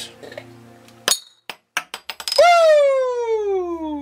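A stubby beer bottle's metal cap pops off with a sharp click about a second in, then clinks and bounces several times on the countertop. This is followed by the loudest sound, a long clear tone that slides steadily down in pitch for about two seconds.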